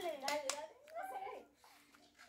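Faint voices of young people talking in the background, stopping about a second and a half in.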